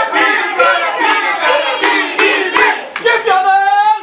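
Cheering squad chanting and shouting a cheer together, with several sharp hand claps, ending in one long, slightly rising yell.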